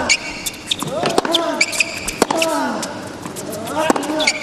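Tennis rally on a hard court: rackets strike the ball about once a second, each stroke with a player's short falling grunt, and brief high shoe squeaks come in between.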